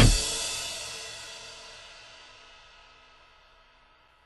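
The final chord of a rock song ringing out, with cymbals washing, as the full band stops. It fades away steadily and is gone about three seconds in.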